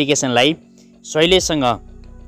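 A voice narrating in Nepali over steady background music, with a short pause in the speech about halfway through.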